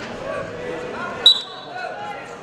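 A referee's whistle gives one short, sharp blast about a second in, against voices echoing in a large arena hall.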